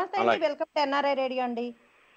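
Speech only: a woman's voice talking, which stops shortly before the end and leaves a faint hiss.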